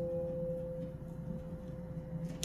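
A single piano note from a vinyl LP left ringing and slowly fading in a pause between chords of a soft piano piece.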